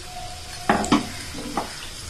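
Batter-coated nendran banana fritters deep-frying in a pan of hot oil, a steady sizzle. Two sharp knocks come a little under a second in, with a lighter one about a second later.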